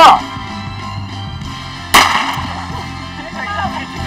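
A single loud, sharp crack about two seconds in, the start signal of a sprint race, with a short tail as it dies away. Steady background music runs underneath, and a loud shout comes right at the start.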